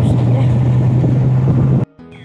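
Open Maruti Gypsy jeep driving on a dirt forest track, heard from on board: a steady engine hum with road and wind noise, cut off abruptly near the end.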